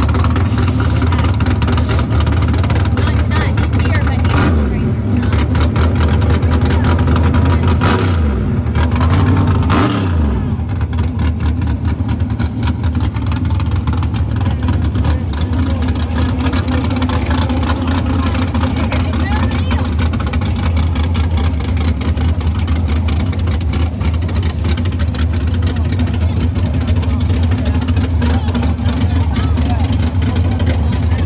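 Drag-racing car engines idling loudly at the starting line, blipped up in revs a couple of times in the first ten seconds or so.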